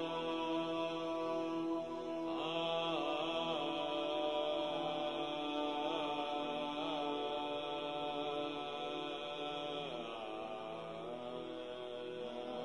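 Meditation music: a slow chant sung in long held notes with wavering ornaments, over a steady drone.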